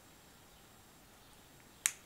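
Near silence with a single sharp click near the end.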